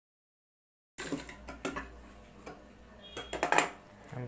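Silent for the first second, then scattered light clicks and metallic knocks as hands handle fabric and the metal parts of a sewing machine, loudest about three and a half seconds in; the machine is not sewing.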